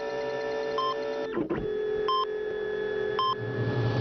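Electronic title-card music: a held synthesizer chord with short, high electronic beeps about once a second, like a scanner sound effect, and a brief break and swoosh about a second and a half in.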